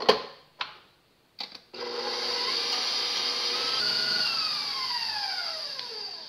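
A few clicks from the controls of a stand mixer. Then its motor starts and runs steadily with the wire whisk whipping heavy cream toward stiff peaks, and near the end its whine falls in pitch as it slows to a stop.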